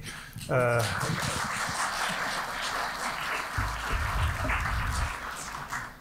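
Live audience applauding, steady clapping after a brief spoken word at the start, with a low rumble in the middle.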